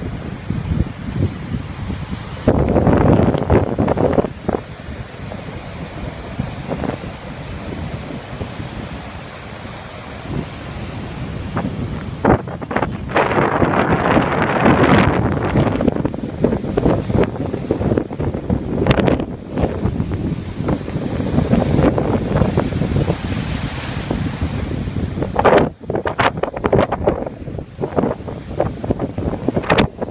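Gusty wind buffeting a phone's microphone over surf breaking on a beach. The gusts swell loudest about three seconds in and again around fourteen seconds.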